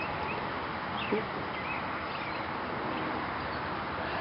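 Steady outdoor background noise with a few faint, short bird chirps in the first couple of seconds and a soft bump about a second in.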